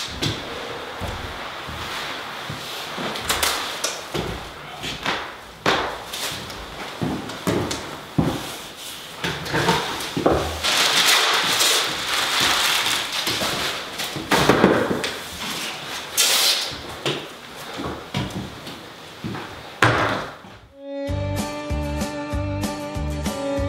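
Plastic masking film and tape being pulled out and pressed around a window frame with a hand masker: irregular crinkling and rasping of tape coming off the roll, with scattered light knocks. Guitar music starts near the end.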